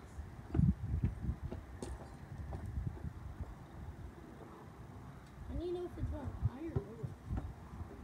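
Irregular thuds of footsteps on gravel as a boy plays basketball. A short wordless voice sound comes between about six and seven seconds in.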